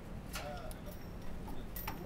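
Faint room sound: a few sharp light clicks, one just after the start and one near the end, with soft short bird chirps in between, over a steady low hum.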